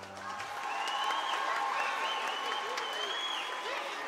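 Audience applause swelling right after the last sung note of a children's choir dies away in the first half second, with high voices calling out over the clapping.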